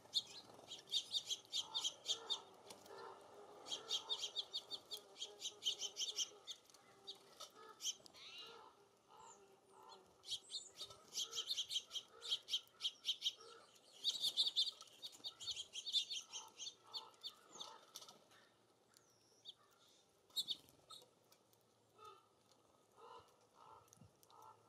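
Small songbirds calling at a feeder: four bouts of rapid, high chattering notes, each lasting about two seconds, with scattered softer lower calls and wing flutters as birds come and go.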